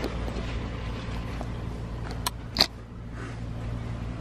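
A steady low hum with a faint background hiss, broken a little past halfway by two short clicks close together, the second louder.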